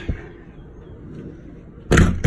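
A sharp knock near the end from an interior door being handled, its panel or latch striking.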